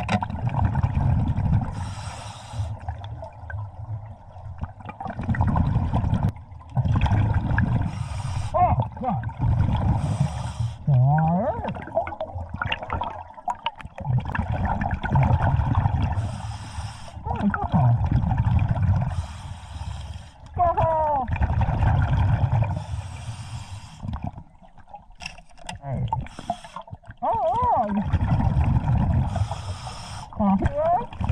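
Scuba diver breathing through a regulator underwater. A short hiss on each inhale comes every few seconds, and a longer low rush of exhaled bubbles fills the gaps, with a few short gliding tones.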